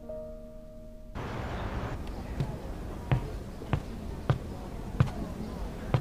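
Footsteps on a hard floor, a sharp step about every 0.6 seconds beginning about two seconds in. For the first second there is soft background music with held tones, which cuts off abruptly.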